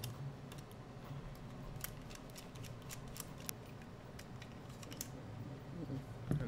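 Faint, irregular small clicks and ticks from a precision screwdriver backing out the small screws that hold an Elegoo Neptune 4 Plus hotend to its plastic carriage housing, with light handling of the metal and plastic parts. A faint low hum runs underneath.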